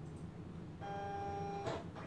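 Silhouette Cameo 4 cutting machine starting a job that has just been sent to it. About a second in, its motor gives a steady whine lasting just under a second, over a low hum.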